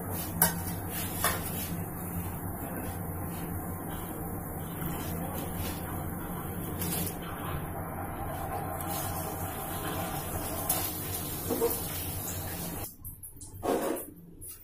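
Pot of water boiling on a gas burner with rice par-boiling in it: a steady hiss over a low hum, with a few faint clinks. The sound drops away about a second before the end.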